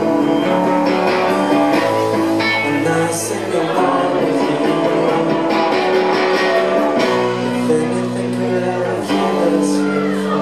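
Live rock band playing loud and steady: electric guitars, bass and drums, with singing.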